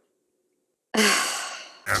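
Near silence, then about a second in, one loud sigh from a person that fades away over most of a second.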